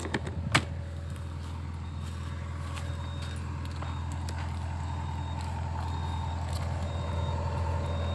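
Sumitomo SH120 long-arm excavator's diesel engine idling steadily, slowly getting louder.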